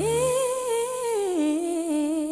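A woman's solo singing voice holds a long note with vibrato. It slides up into the note at the start and steps down to a lower held note partway through. The low backing chord drops out just after it begins, leaving the voice almost unaccompanied.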